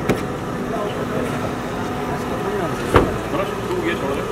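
Steady low engine hum of an idling vehicle, with a car door clicking open at the start and shutting with one sharp knock about three seconds in.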